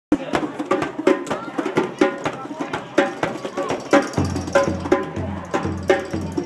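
Several hand drums, djembes and congas, played together in a drum circle: a fast, even rhythm of sharp slaps and tones. A low, pulsing hum joins about four seconds in.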